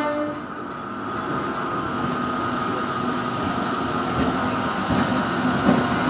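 EMU local train running past close by: the last of its horn blast cuts off at the very start, then a steady rumble of wheels on rail with a high whine that grows a little louder. From about four seconds in, wheel clicks over the rail joints join in.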